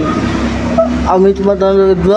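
A motor vehicle rumbling past for about the first second, followed by a man's voice.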